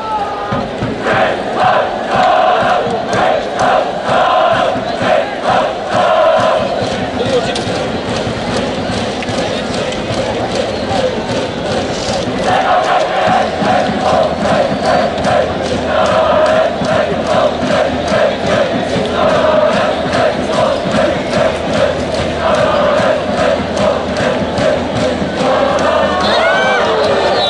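High school baseball cheering section: a brass band plays a cheer song over a steady drumbeat while the crowd chants along in rhythm, with a short lull about a third of the way in.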